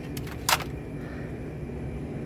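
Steady low hum of a grocery store's refrigerated display cases, with one brief sharp noise about half a second in.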